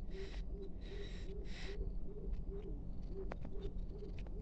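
A bird's repeated low hooting call, short even notes about two a second, with a high hiss that comes and goes above it and a couple of sharp clicks a little after three seconds in.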